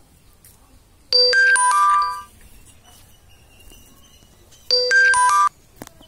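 An electronic ringtone melody, a short phrase of bright stepping notes played twice about three and a half seconds apart, followed by a brief click.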